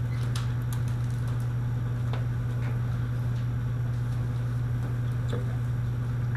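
Steady low hum, with a few faint clicks scattered through it.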